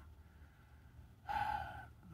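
A man sighs once, a short breathy exhale about one and a half seconds in.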